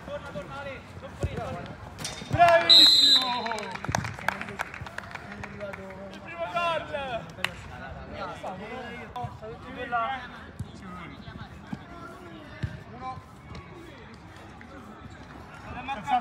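Five-a-side football on artificial turf: sharp ball kicks and bounces with players shouting, and a short referee's whistle blast about three seconds in, signalling a goal.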